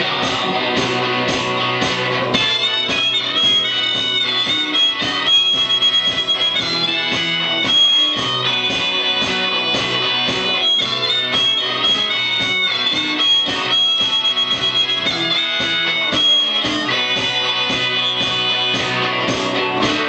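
Blues rehearsal: a harmonica plays long held and bent notes from about two seconds in until near the end, over a steady strummed rhythm on cigar box guitar and guitar.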